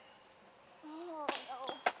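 A putted golf disc striking the metal disc golf basket with a sharp clang about a second in, then a second, louder clank; the putt misses. A person's voice rises and falls briefly between the two strikes.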